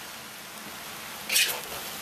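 Beef and noodle stir-fry with bean sprouts and green onions sizzling in a wok on high heat, a steady hiss. It turns briefly louder a little over a second in as a wooden spatula starts tossing the food.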